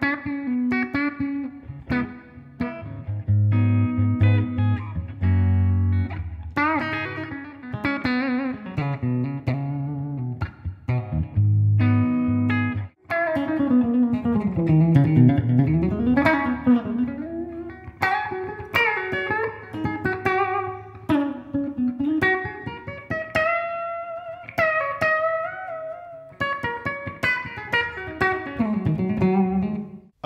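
Electric guitar through a Boss Katana combo amp on its clean channel: chords with ringing low notes for about the first half, a short break, then single-note melodic lines that start with a slide down the neck and back up.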